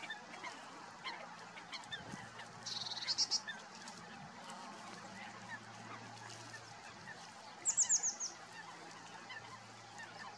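Wild birds calling around a reed-bed nest: many short scattered chirps, a brief buzzy trill about three seconds in and a quick run of five descending whistles near eight seconds, over a faint steady low hum.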